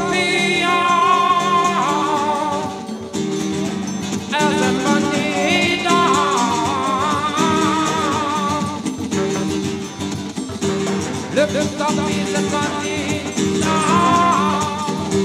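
Live band playing, with a male voice singing phrases with vibrato over strummed guitar, drums and hand percussion. The singing comes in three phrases with short gaps between them while the band plays on.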